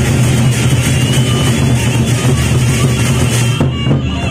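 Gendang beleq ensemble playing: large Sasak double-headed barrel drums beaten in a dense, driving rhythm with clashing cymbals, loud and continuous. Near the end the cymbal clashing thins out briefly.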